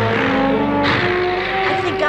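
Cartoon sea-serpent monster roaring: one noisy roar trailing off, then a second about a second in, over held notes of dramatic background music.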